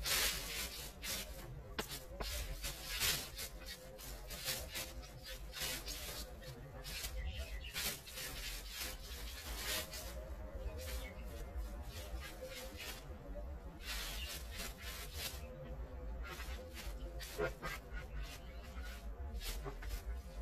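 Repeated, irregular scratchy scraping strokes of a hand tool working a dirt garden yard.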